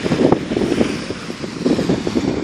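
Wind buffeting the microphone in uneven gusts, with small waves breaking on the sand underneath.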